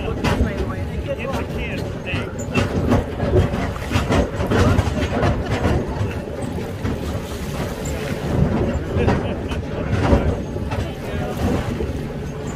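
Tractor and wagon ride crossing shallow lake water: a steady low engine rumble with scattered clatter and splashing as it bounces over the stony bottom, and indistinct voices of passengers underneath.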